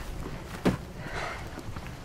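A single sharp knock about a third of the way in, then a soft breath.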